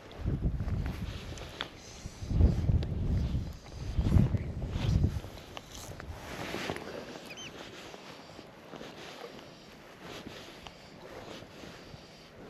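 Wind gusting over the microphone above choppy loch water: three strong low gusts in the first five seconds, then a softer steady wash of wind and water.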